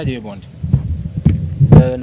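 Low, uneven thuds and a murmur of voices close to the microphones, then a man starting to speak near the end.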